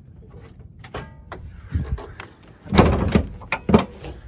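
Car hood being opened: a few light clicks, then a loud clunk and rattle about three seconds in, and a second sharp clunk just before the end.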